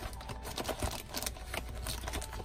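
Scrap paper being handled while someone rummages through it for a piece: a run of small, irregular light taps and rustles.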